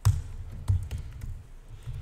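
Typing on a computer keyboard: a scatter of key clicks with dull knocks, the loudest at the very start.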